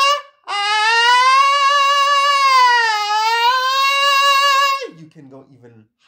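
A man sings a loud, sharp, chest-like sustained 'ah' in a high register, voiced with the cricoarytenoid lateralis muscle active so that it sits higher than his ordinary chest voice. A brief rising 'ah' cuts off just at the start, then one long note holds for about four seconds, dipping slightly in pitch midway and rising back before it stops.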